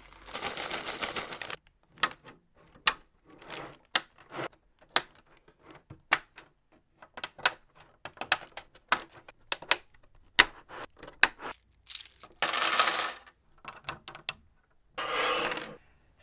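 Hard plastic Lego pieces clicking and snapping as they are handled and fitted. The clicks are sharp and irregular, and there are three stretches of plastic rustling: at the start, about twelve seconds in, and near the end.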